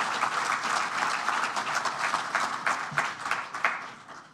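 Audience applauding, a dense patter of many hands clapping that dies away near the end.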